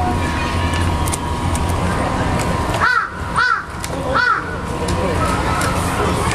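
A capybara gnawing on a wooden branch, its incisors scraping the bark in small scattered clicks. A crow caws three times in the middle.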